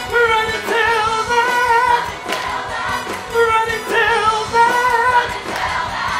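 Live musical-theatre performance: upbeat band music with several voices singing sustained, wavering lines, punctuated by drum hits.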